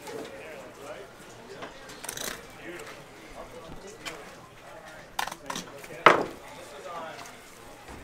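Indistinct voices talking in the background, with a few sharp knocks and clicks from a yellowfin tuna being filleted on a wooden cleaning table. The loudest knock comes about six seconds in.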